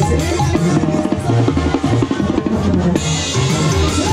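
Tarolas, a set of metal-shell snare drums, played with sticks in a live banda-style group: a fast run of strokes like a roll for about two and a half seconds. The full band comes back in about three seconds in.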